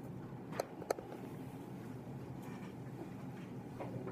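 Quiet room tone with a faint steady hum, broken by two sharp clicks close together about half a second and a second in, and a fainter click near the end.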